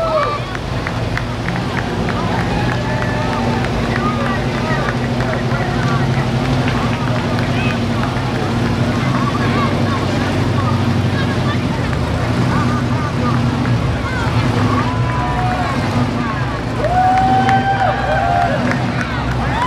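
Engines of a line of classic cars running steadily at low speed as they pass, over the chatter of a roadside crowd.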